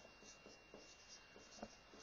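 Faint marker strokes on a whiteboard as an equation is written out, with a couple of light taps of the marker tip.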